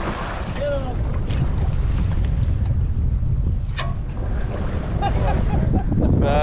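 Wind buffeting the microphone on a boat at sea, a steady low rumble with water washing along the hull. Faint voices come and go, and there is one sharp click about two-thirds of the way through.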